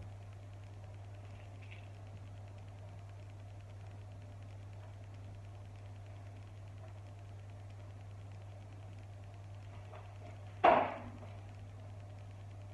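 Quiet room tone with a steady low hum, broken once near the end by a single short thump.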